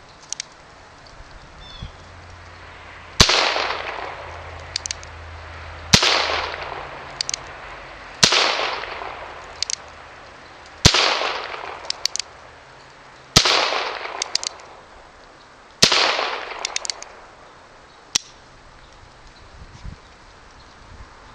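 Colt Frontier Scout .22 LR single-action revolver firing six shots about two and a half seconds apart, each with a long echo dying away through the trees. Between shots come quick little clicks as the hammer is thumbed back, and a last single click sounds near the end.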